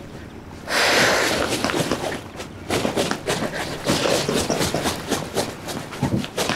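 Fly reel's drag clicking in quick, irregular runs as a big northern pike pulls line off it, with a louder rushing noise about a second in.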